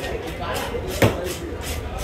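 Hand fish scaler scraping the scales off a fish in short repeated strokes on a wooden chopping block, with one sharp knock on the block about halfway through.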